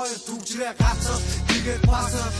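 Hip-hop track with a male rapped vocal. A deep bass beat comes in about a second in, with a second heavy kick near the end.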